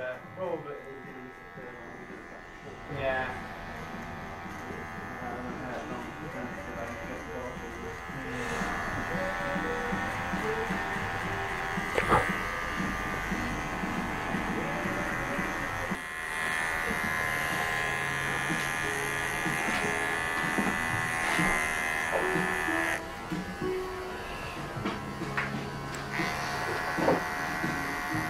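Electric hair clippers buzzing steadily while working clipper-over-comb through short hair to remove bulk. The buzz is louder through a long middle stretch and drops back near the end.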